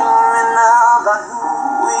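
A voice singing a slow ballad melody, holding long notes with a wavering vibrato, with a short dip in loudness a little past the middle.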